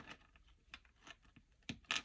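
Paper cards being flicked through by hand in a clear plastic card holder: faint light ticks and rustles, with a couple of louder clicks near the end.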